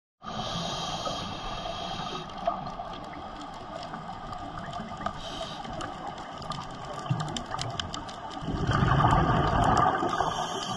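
Underwater sound picked up by a dive camera: a steady hiss with scattered sharp clicks and crackles throughout, then a louder rush of bubbling from about eight and a half seconds in, typical of a scuba diver's exhaled regulator bubbles.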